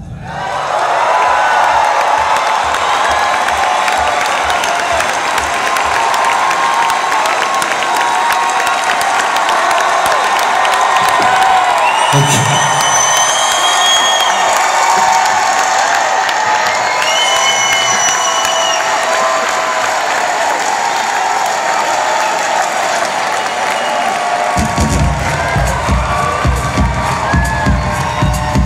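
A concert audience cheering and applauding right after a song stops, with two long whistles in the middle. About three-quarters of the way in, a heavy electronic bass beat starts up again under the crowd noise.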